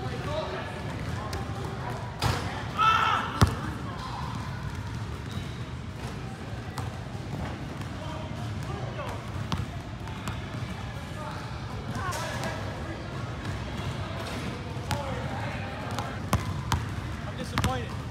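Basketball being dribbled on an indoor court floor: irregular bounces, with one sharp, louder impact about three and a half seconds in.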